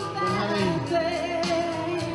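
A man and a woman singing a slow song into microphones over instrumental accompaniment, with long held notes.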